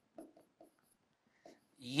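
Marker pen writing on a board: a few short, faint strokes, with a gap in the middle.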